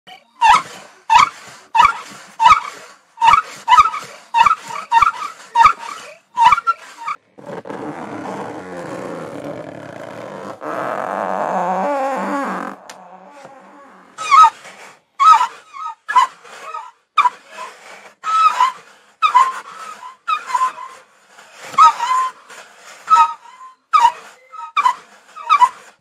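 Seagull cries imitated as foley by pressing and rubbing a cardboard mailer box: a quick series of short cries about two a second, then a longer scraping cry in the middle, then more short cries.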